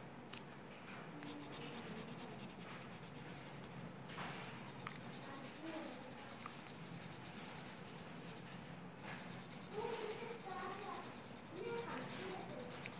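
Felt-tip marker scratching and rubbing on paper in repeated colouring strokes, faint.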